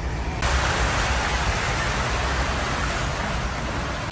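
A vehicle's tyres running through shallow muddy floodwater: a steady rushing hiss of water that starts suddenly about half a second in, over the low rumble of the vehicle.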